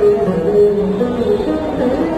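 Saraswati veena played in Carnatic style: plucked notes that bend and slide between pitches.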